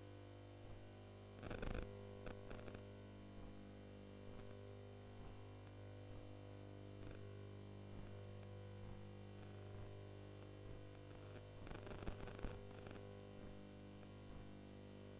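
A steady electrical hum under faint room noise, broken by two short flurries of sharp thuds from gloved punches landing: one about a second and a half in, and another near the twelve-second mark.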